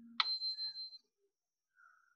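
A single short high-pitched bell-like ring, starting sharply a moment in and fading out within about a second, preceded by a faint low hum.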